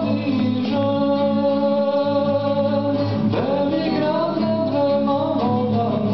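A man singing a slow Serbian spiritual song in long held notes, accompanied by his own nylon-string classical guitar.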